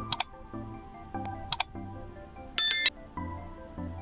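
Soft background music, with a subscribe-button animation's sound effects laid over it: two sharp mouse clicks about a second and a half apart, then a short, bright, bell-like chime near three seconds in, the loudest sound here.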